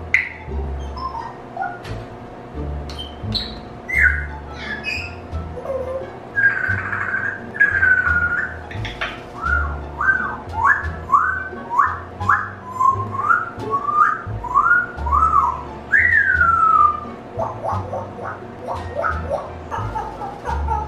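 African grey parrot whistling: scattered whistles at first, then a quick run of short rising whistles in the middle, one long falling whistle, and a few sharp clicks near the end.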